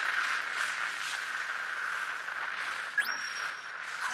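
Anime sound effect of a figure engulfed in flames: a steady rushing fire noise, with a sudden rising whine about three seconds in that holds briefly and stops.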